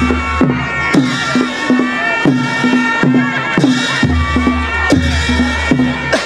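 Nepali folk dance music: a reedy wind melody held over a steady drum beat of about two strokes a second, each stroke dropping in pitch.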